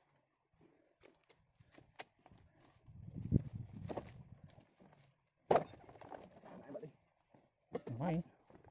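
Knocks, thuds and rustling as oil palm fresh fruit bunches are handled and stacked on a wooden hand cart. There are scattered light clicks, a heavier run of thuds about three to four seconds in, and a sharp knock shortly after.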